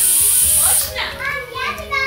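Steam hissing hard from the valve of an Afghan cast-aluminium pressure cooker as the valve is held open with a fork to let off pressure. The hiss cuts off a little under a second in.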